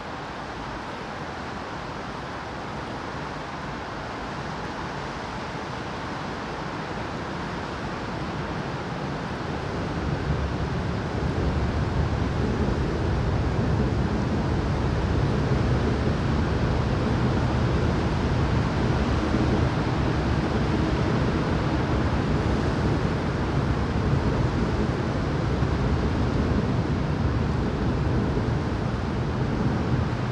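Steady rain falling, an even hiss, with a low rumble that builds about a third of the way in and then stays louder.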